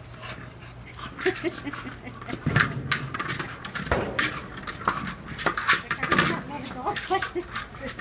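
A pit bull-type dog panting in quick breaths while nosing and pawing a large rubber ball around a concrete pen, with short scuffs and knocks of the play. A woman laughs about a second in.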